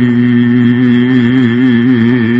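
Sung Gurbani: a voice holds one long note with a slight waver over a steady low drone.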